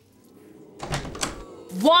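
An apartment door being pulled open, with a thump about a second in.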